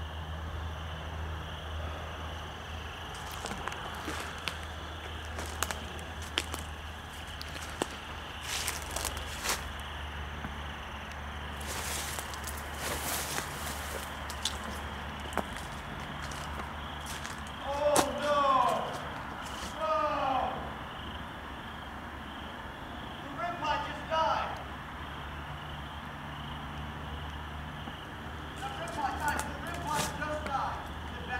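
Footsteps through dry brush and undergrowth, with scattered twig snaps and a stretch of rustling about twelve seconds in, over a steady low hum. In the second half a distant voice is heard in a few short bursts.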